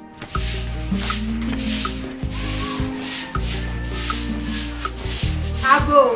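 Short straw hand broom sweeping a cement floor in quick strokes, about two a second, over background music.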